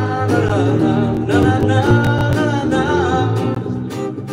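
A man singing live with acoustic guitar accompaniment, his voice wavering on long sung notes over strummed chords.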